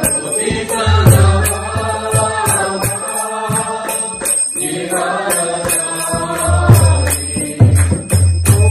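Devotional mantra chanting sung as music, in two long drawn-out phrases, over evenly spaced strokes of small hand cymbals at about three a second.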